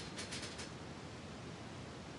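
A few quick light rustles and clicks in the first half-second from a paper flower and hot glue gun being handled, then only a steady faint hiss.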